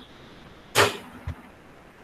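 A brief, loud burst of noise about three-quarters of a second in, followed about half a second later by a soft low thump.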